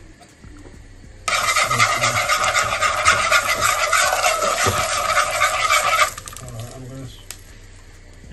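Loud sizzling and crackling as liquid hits hot oil and curry powder in a pot. It starts suddenly about a second in, drops off sharply after about five seconds, and fades into faint crackles.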